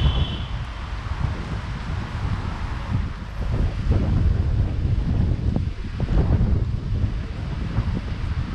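Wind buffeting the camera microphone: an unsteady low rumble that surges louder about halfway through and again near the end.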